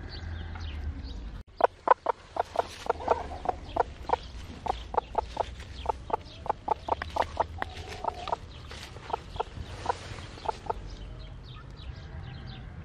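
A broody hen clucking in a long run of short, sharp notes, about four a second, starting about a second and a half in and stopping near the end. She is being handled on her nest of eggs.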